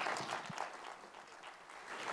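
Audience applauding, a dense, even patter of many hands clapping.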